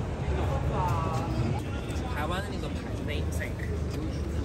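Busy city street ambience: a steady low traffic rumble with brief snatches of passers-by talking.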